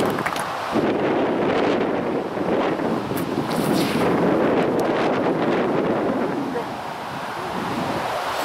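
Strong wind buffeting the microphone: a loud, steady rush of noise that swells and eases slightly in gusts.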